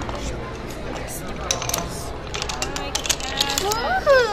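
Thin wooden building planks clacking against each other and the tabletop as they are handled and stacked, with a run of sharp clicks in the second half. Voices murmur underneath, and a child's voice rises in pitch right at the end.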